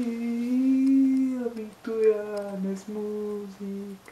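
A man singing wordless notes unaccompanied: one long held note that swells and falls for the first second and a half, then a few shorter, steady notes.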